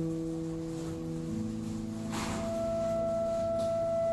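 Live improvised duo music: an electric guitar holds sustained chord tones that move to a lower chord about a second in. A little after two seconds a clarinet comes in on one long held high note, with a breathy attack.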